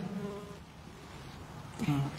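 A pause in a man's lecture: faint room tone, with a short sound of him drawing in to speak again near the end.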